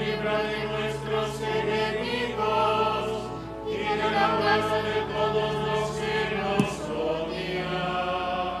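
Choir singing slow, sustained sacred music in a chant-like style, the voices holding long notes. There is one brief sharp click about six and a half seconds in.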